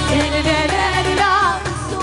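Women singing a Kabyle song live with band accompaniment, the lead voice bending and wavering through an ornamented held note about halfway through.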